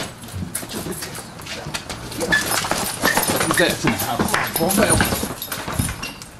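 Indistinct voices and short vocal sounds with scattered clicks and knocks.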